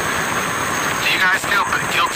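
Steady background hiss, then a person's voice starts speaking about a second in.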